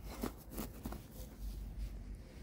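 English Cocker Spaniel sniffing and scrabbling with its nose and paw in grass: a few short, scratchy rustles in the first second, then softer rustling.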